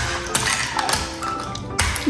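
A rubber mallet striking a block of ice frozen in a balloon, which sits on a metal baking tray, in a few sharp taps, spaced unevenly, as it is knocked to crack it open. Background music plays under the taps.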